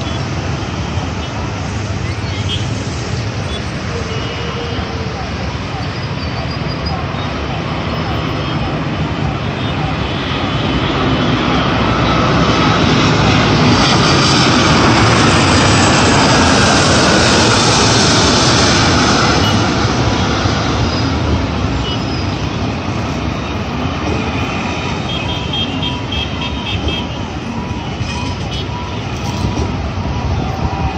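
Airbus A330-200 jet airliner passing low overhead on final approach, its engine noise swelling to a peak about halfway through and then fading as it goes by. Road traffic and voices carry on underneath.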